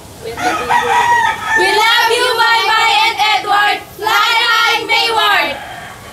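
Several young women singing together loudly in high, wavering voices without clear words, in three long phrases, the middle one the longest.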